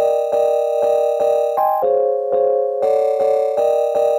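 Sampled keyboard chords from Maschine 3's 'Chord Keys F# Bootleg' sampler preset playing a quantized pattern in a loop. The chord is re-struck in an even rhythm about three to four times a second, with a lengthened release, and it changes briefly twice.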